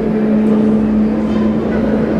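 A man's voice chanting a rain incantation into a microphone, holding one long steady note.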